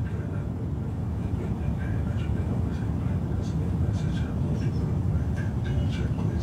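Steady low rumble of outdoor background noise, with a few faint soft clicks.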